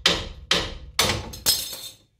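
A hammer striking the steel of a car's front suspension four times, about half a second apart, each blow ringing briefly and dying away. These are blows to knock a ball joint loose, with a ball joint separator clamped on.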